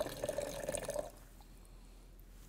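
A thin stream of water poured from a stainless steel pot splashes into a plastic container that already holds some water. It stops about a second in.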